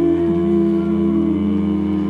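Live rock band playing a slow, sustained passage: long held notes layered over one another, with a note sliding down in pitch shortly after the start.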